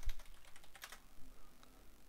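Computer keyboard typing: a quick run of key clicks that thins out after about a second.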